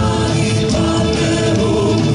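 Live band music with a woman singing long held notes into a microphone.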